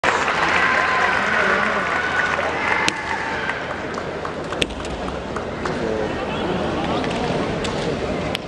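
Kendo fighters' drawn-out kiai shouts in the first three seconds, over arena hubbub, with two sharp cracks about three and four and a half seconds in.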